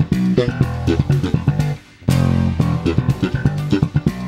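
Electric bass played slap style: a funky riff of slaps and pops, played twice. Each time it opens on a held low note and runs into quick percussive attacks, with a brief gap just before it starts again.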